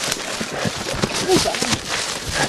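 Rapid, irregular crunching and knocking of people scrambling on foot through brush, heard up close on a handheld camcorder, with brief fragments of voice.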